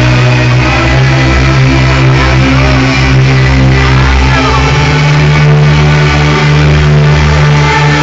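Loud live electronic music played on synthesizer keyboards: sustained synth chords over a held bass note that shifts pitch a little past halfway, with short gliding synth sounds above.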